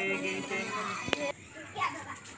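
A man chanting a devotional ritual text in a sung recitation, holding one long note that ends within the first half-second, then quieter voices of children and others, with a single sharp click about a second in.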